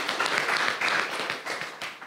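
Audience applauding, the clapping tapering off near the end.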